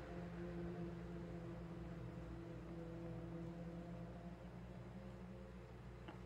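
Faint steady low hum of several tones over quiet room noise, fading slightly.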